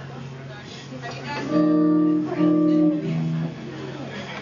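Electric guitar sounding three held chords in a row, starting about a second and a half in, the last one lower and shorter.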